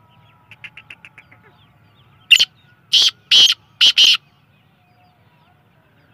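Young black francolin calling: a quick run of about seven soft chirps, then five loud, harsh notes in under two seconds.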